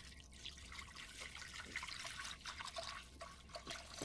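A thin stream of water poured from a jug into an aluminium pressure cooker, trickling and splashing faintly as it hits the pot bottom and pools around the meat.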